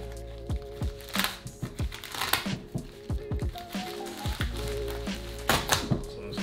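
Background music with a steady beat, over the crinkling of a plastic poly mailer being cut open with a knife, with louder crinkles about a second in, a little after two seconds, and twice near the end.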